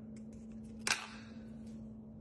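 A plastic deli-container lid snapping off its tub with one sharp click about a second in, amid faint handling clicks, over a low steady hum.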